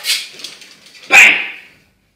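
A small dog barks twice in short, sharp, high yaps; the second, about a second in, is the louder.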